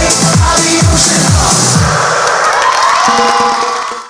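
Electronic dance music with a heavy kick drum about two beats a second, which stops about two seconds in. Studio audience cheering follows, then the sound fades out at the very end.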